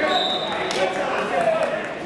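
Overlapping voices of spectators chattering in a large gymnasium. A brief high steady tone sounds for about half a second near the start, and a sharp knock follows just after.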